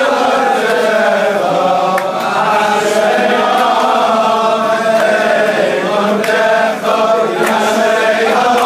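A large crowd of men singing a Hebrew religious song together in unison, voices only, with no instruments.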